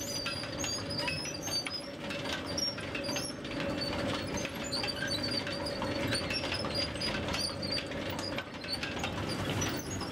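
Industrial drag conveyor with a single strand of WH-132 heat-treated barrel and rivet chain running under a load of sawdust and wood chips. A steady hum runs under constant clicking and rattling from the chain, and short high chirps recur throughout.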